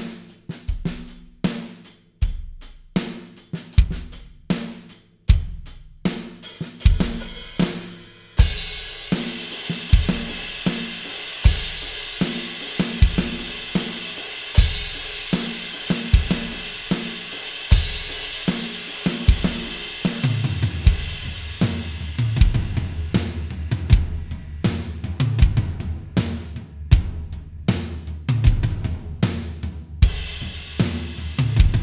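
Electronic drum kit playing a steady groove: kick drum on one and three, snare syncopated between the hi-hat eighth notes. About eight seconds in a bright cymbal wash joins as the right hand moves off the hi-hat, and from about twenty seconds low tom notes ring under the beat as the accents shift.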